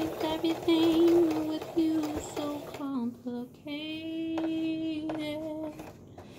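A woman singing a tune unaccompanied, ending on one long held note in the second half.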